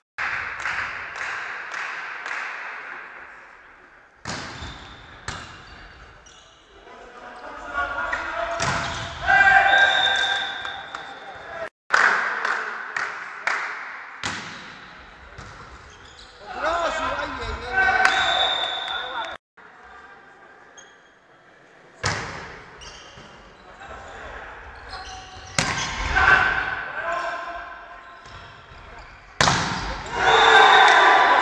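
Volleyball rallies in an echoing sports hall: the ball is struck again and again with sharp smacks, and players and spectators shout in bursts between points.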